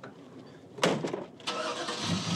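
A 1960 Chevrolet Impala being started: a thump about a second in, then the starter cranks for a moment and the engine catches just at the end.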